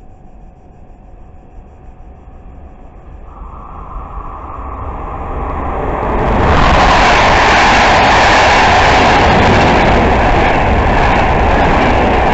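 Passenger train hauled by an electric locomotive approaching along the track and passing close by at speed. A steady tone sets in about three seconds in, the sound of the wheels on the rails grows, and from about six seconds on the train goes past loudly.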